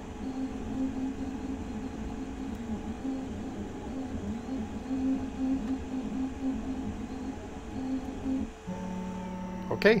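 3D printer stepper motors whining in shifting pitches as the print head moves through a print. About eight and a half seconds in, the motion stops and a steady hum remains: the filament run-out sensor has tripped and the printer pauses the job.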